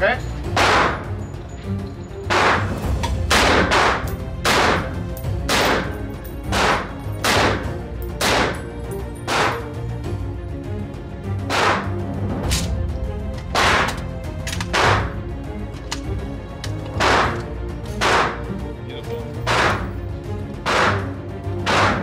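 DSA SA58, a 7.62×51 mm NATO FAL-pattern rifle, fired semi-automatic: about twenty sharp shots at roughly one a second with uneven pauses, each echoing briefly off the walls of an indoor range.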